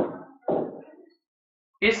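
Two short knocks about half a second apart, each dying away quickly.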